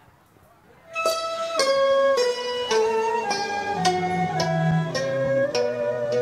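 Instrumental introduction to a Vietnamese chèo song begins about a second in: a plucked string instrument plays a stepping melody of single notes, about two a second. Low held notes join it partway through.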